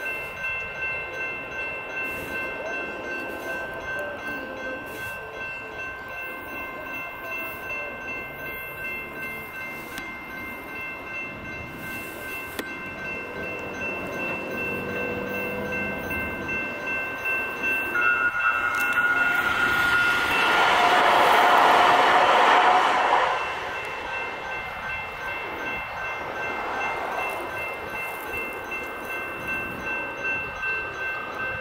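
Railroad crossing's GS Type 2 electronic bell ringing in steady repeated strokes. About two-thirds of the way through, a louder rushing noise swells for a few seconds and cuts off suddenly.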